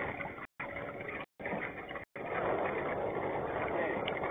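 Steady wind and water noise picked up by a boat-mounted action camera, growing louder about halfway through. The sound drops out completely three times in the first half.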